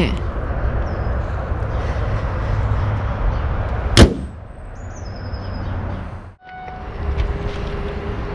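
Car bonnet lowered and shut with a single loud slam about halfway through, over a low steady rumble. Near the end a steady hum starts.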